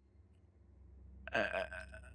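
A man's short, hesitant "uh" into a close microphone, about a second and a half in, after a near-quiet pause.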